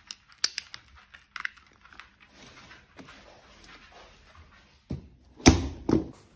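Handling noise from a wireless guitar transmitter pack and its cable: a few sharp clicks, then soft rustling. Near the end, two heavy thumps on a hard-shell guitar case, the second the loudest.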